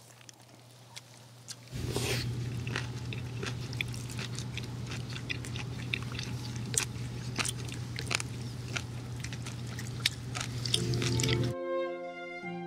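Close-miked chewing of grilled green-onion kimchi and meat, picked up by an ear-shaped ASMR microphone: many small wet clicks and crunches over a low steady hum, starting about two seconds in. Music comes in near the end.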